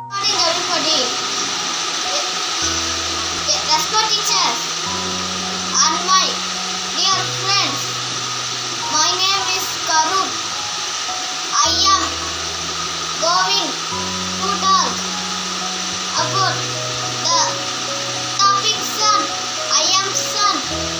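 A child's voice speaking over background music with a slow, repeating bass line and a steady hiss.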